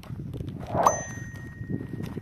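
A single bright bell 'ding' sound effect about a second in, ringing on a steady tone for about a second, as played with a channel's notification-bell reminder animation.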